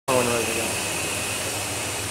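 A steady hiss with a faint, thin high-pitched whine running under it, after a brief fragment of a voice at the very start.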